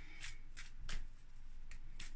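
A tarot deck being shuffled by hand, the halves worked into each other in a series of short, separate papery card strokes.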